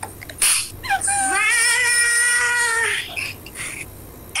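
A long, high-pitched wavering cry, held for about two seconds after a brief rise in pitch, preceded by a short sharp noise about half a second in.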